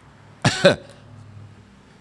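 A man's short cough, two quick bursts close together about half a second in.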